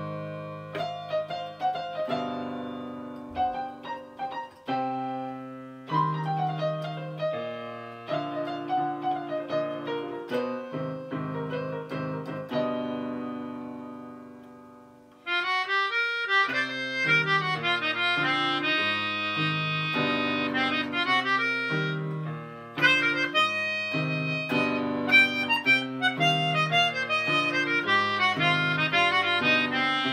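Melodica and electronic keyboard improvising a blues: held keyboard chords under a reedy melodica melody whose notes waver in pitch. About 15 seconds in, the sound fades away, then comes back suddenly louder with busier, more rhythmic playing.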